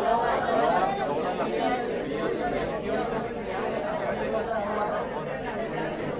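A class of people reading a passage aloud together, many voices overlapping out of step. It sounds like a ragged, unsynchronised group reading, which the teacher then stops, asking them to follow the punctuation and pitch their voices.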